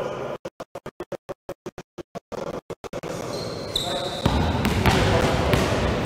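Several basketballs being dribbled at once on a hardwood gym floor, with short high squeaks of sneakers on the court about three and a half seconds in. For the first three seconds the sound cuts in and out rapidly. The dribbling is louder and denser from about four seconds in.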